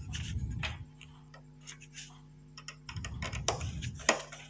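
Gloved hands handling ballast wires and connectors in a metal lamp housing: scattered light clicks and taps, with low rubbing handling noise near the start and again near the end, over a faint steady hum.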